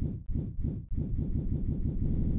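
A low, rumbling pulse effect for the outro title cards. It starts abruptly at full loudness, pulsing about six times a second, and after about a second the pulses run together into a steadier low buzz.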